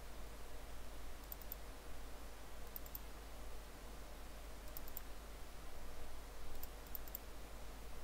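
Faint computer mouse clicks, in close pairs like double-clicks, every second or two, over a low steady hum.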